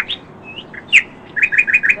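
Small birds chirping: short high chirps, a downward-sliding note about a second in, then a quick run of about five notes near the end.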